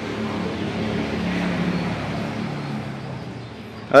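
A road vehicle passing by, its engine and tyre noise swelling and then fading away.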